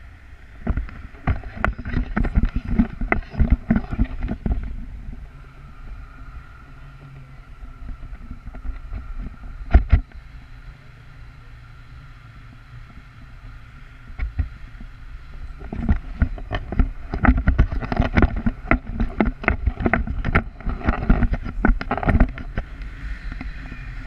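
Wind buffeting a camera microphone on a tandem paraglider in flight, in gusty, rumbling bursts. It is rough for the first few seconds, calmer through the middle with one sharp knock about ten seconds in, then heavy again for most of the last eight seconds.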